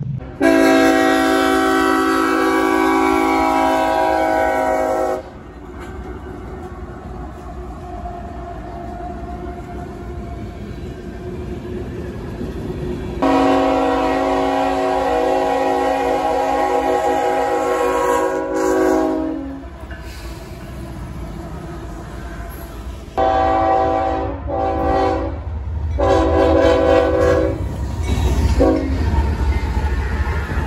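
Diesel freight locomotive air horn sounding a chord of several notes: two long blasts, then a run of shorter blasts near the end, over the continuous low rumble of a passing train that grows louder toward the end.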